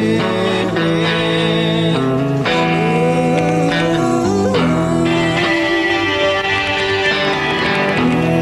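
Commercial soundtrack music led by guitar, with sustained chords that change every second or so and a sliding note near the middle.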